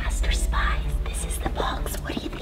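Whispering over background music that carries a steady, deep bass drone.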